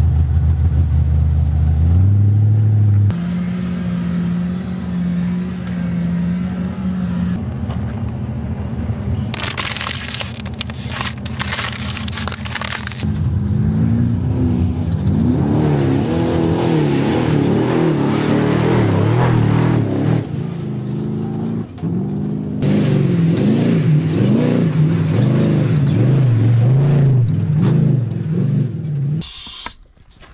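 Off-road race pre-runner truck's engine running and revving as it drives desert trails. The pitch wavers up and down, and the sound jumps abruptly several times.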